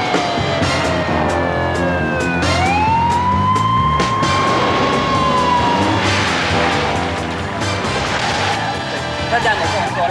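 A wailing siren whose pitch slides slowly down, sweeps back up about two and a half seconds in, holds, then falls away again, heard over music with a repeating bass line and drum beats.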